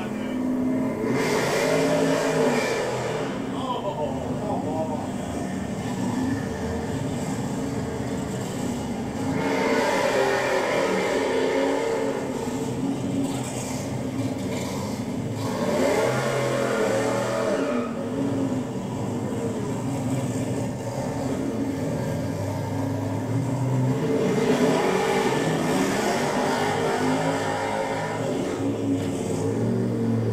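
V8 muscle cars with blowers through the hood revving and accelerating away, in several loud surges, heard played back through a room loudspeaker.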